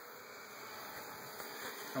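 Faint, steady buzzing of honeybees around an opened hive box.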